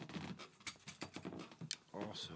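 Handling noise from an acoustic guitar and a harmonica holder being picked up and set in place: a run of small clicks, knocks and scrapes, with some low muttering or breathing mixed in.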